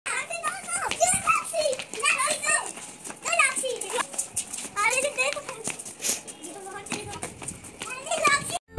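Young children's voices shouting and squealing excitedly in play, in many short, high calls that rise and fall in pitch.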